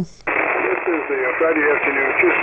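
Single-sideband ham radio reception on the 40-metre band: after a brief gap about a quarter second in, the other station's voice comes through the receiver, narrow and tinny over a steady band hiss.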